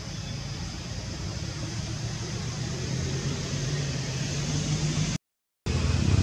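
Steady outdoor background noise with a low hum, growing slightly louder, broken by a brief total dropout about five seconds in.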